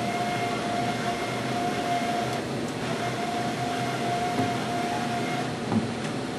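Varian linear accelerator's collimator jaws being driven open by their motors: a steady whine that stops about five and a half seconds in. Steady ventilation noise runs underneath.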